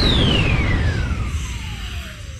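Sound effect of a channel logo ident: one tone gliding steadily down in pitch over a low rumble, the whole growing slowly quieter.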